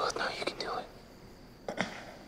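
A man whispering close into someone's ear for about a second. Near the end there are two short sharp clicks.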